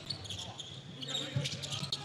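Court sound of a live basketball game: the ball bouncing on the hardwood floor, with a few short sharp knocks scattered through, under faint arena crowd noise.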